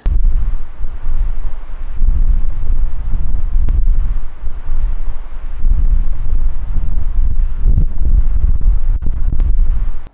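Wind buffeting the microphone: a loud, gusting low rumble that rises and falls throughout.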